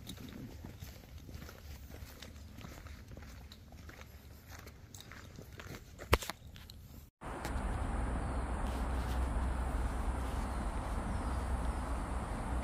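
Light rustling and footsteps on forest ground with a sharp knock of handling noise about six seconds in. After a sudden cut, the steady rush of a shallow creek running over rocks, with a low rumble.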